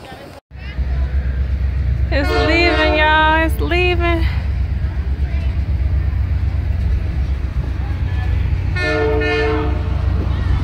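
Locomotive horn sounding two blasts about two seconds in and another near the end, over a steady deep rumble from the train.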